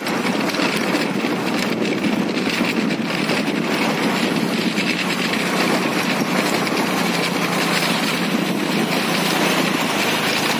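A small vehicle engine running steadily under way, with a dense, even drone.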